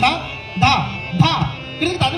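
Tabla solo: sharp drum strokes with the bass drum's pitch bending up and down after each stroke, about two strokes a second, over a steady held harmonium melody.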